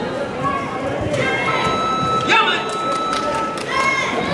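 Voices calling out over a general hubbub of crowd chatter in a large sports hall, from spectators and coaches around a karate bout.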